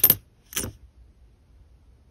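Pennies clinking together as they are handled in the fingers: two brief metallic clinks, one at the start and one about half a second in.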